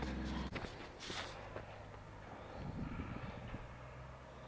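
Faint footsteps on a dirt-and-gravel path, with a brief scuff about a second in.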